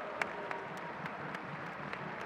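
Crowd applause from the stands, with scattered sharp hand claps close by, irregularly spaced.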